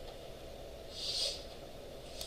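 Quiet room tone with one short, soft hiss about a second in.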